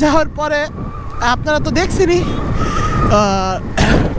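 Suzuki Gixxer SF motorcycle's single-cylinder engine running on the move, with road and wind noise, under a man talking.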